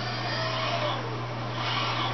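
Steady room noise: a low hum with an even hiss from a running ceiling fan.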